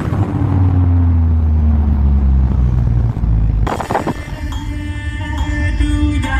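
Loud, bass-heavy music from a truck-mounted speaker system. A deep bass tone slides slowly downward for about three and a half seconds, then a sharp hit brings in a melodic line.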